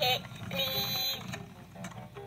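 A LeapFrog counting-train toy plays a short electronic tune through its speaker, ending just past a second in. Underneath, its plastic wheels rattle unevenly as it is pushed along a countertop.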